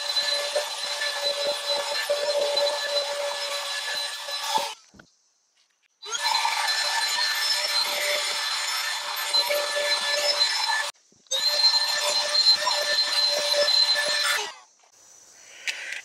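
Cordless handheld car vacuum running with a steady motor whine, in three stretches that cut off suddenly to silence twice, about five and eleven seconds in.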